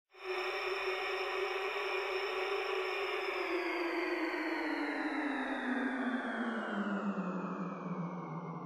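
Intro sound effect: one sustained, buzzy drone that starts suddenly and slowly slides down in pitch throughout.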